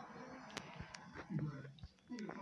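Faint, low speech with a few light clicks and knocks from the handheld phone being moved about.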